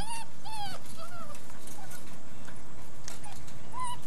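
Puppy whining: a string of short, high whines in the first second, a few fainter ones after, and one more near the end.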